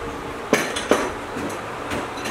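A few light metal clinks and knocks from the nylon-coated steel cable and its wire rope clamp being handled. The two loudest come about half a second and about a second in, over steady background noise.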